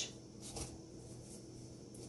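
Faint soft rubbing and brushing of hands working a lump of sticky marshmallow play dough in cornstarch.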